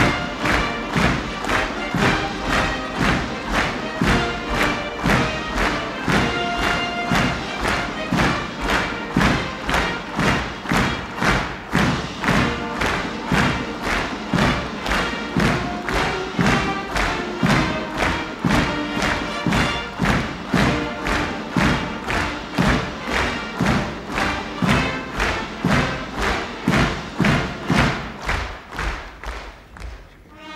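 Large audience clapping in unison, a steady rhythmic ovation at about two claps a second, over band music. The clapping stops just before the end, leaving a held chord from the band.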